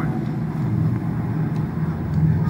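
A steady low rumble from the film's soundtrack, played through the screen's speakers and picked up by a phone in the room.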